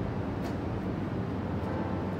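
Steady low rumble of city traffic from the streets far below, heard outdoors from a high balcony, with a faint click about half a second in.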